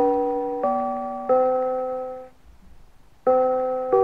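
Mr. Christmas Bells of Christmas (1991) tree's brass bells chiming a Christmas song in four-part harmony. Three ringing chords come about two-thirds of a second apart, each fading away, then a pause of about a second, then another chord near the end.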